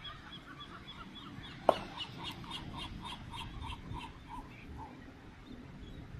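A bird calling in a rapid run of short repeated notes, about five a second, that trails off; a single sharp click comes just as the run starts.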